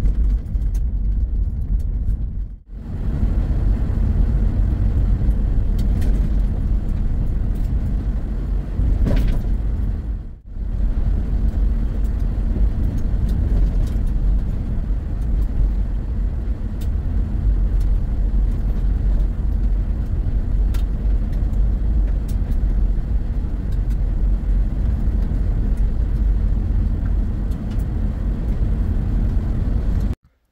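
A car driving on a gravel road, heard from inside the cabin: a steady low rumble of tyres on gravel and engine, with faint scattered clicks. The sound dips briefly twice, about 3 and 10 seconds in.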